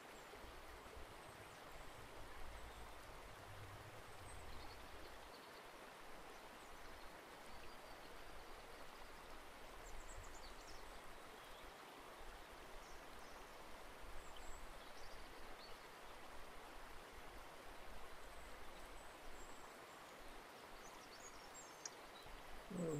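Near silence: faint room tone, a steady low hiss with a few faint, brief high ticks scattered through it.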